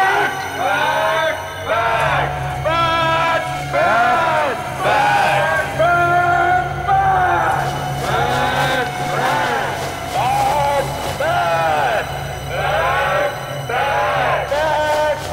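A group of men and women chanting the word "bat" over and over in unison, each call rising and falling in pitch, over a steady low drone of background music.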